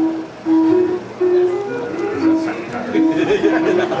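Title music from an old 16mm film's soundtrack: a melody of short notes stepping up and down.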